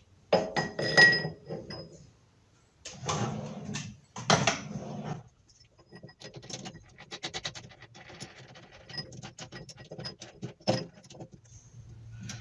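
Metal clinks and knocks as a mild steel (St3) cone workpiece is set into a lathe's chuck jaws, one clink ringing briefly about a second in. Later comes a run of quick small clicks and a sharper click near the end as the chuck is worked with its key.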